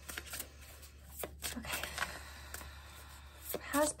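Tarot deck being shuffled between the hands: cards sliding and tapping against each other in soft, irregular clicks.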